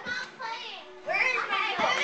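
Children's high voices shouting and calling out in play, louder from about a second in, with two dull thumps, one at the start and one near the end.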